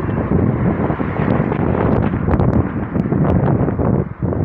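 Wind rushing over the microphone together with the road and engine noise of a moving car, a loud steady rumble with a few faint clicks.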